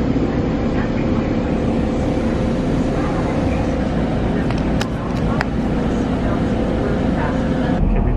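A car rolling slowly, its engine and tyre rumble heard from inside the cabin as a steady low noise, with a faint steady hum and two sharp clicks about five seconds in.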